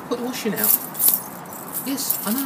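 A bunch of keys jangling in a hand in short rattles, with a man talking in snatches.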